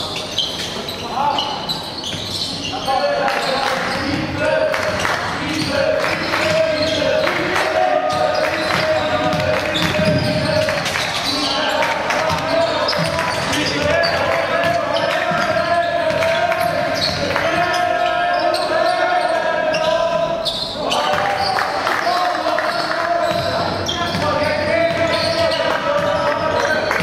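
A basketball bouncing on a hardwood court during play, with voices ringing through a large hall.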